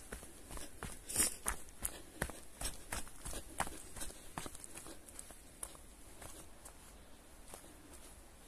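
Footsteps on a dirt trail covered in dry leaves: irregular steps and scuffs, which grow quieter after about five seconds.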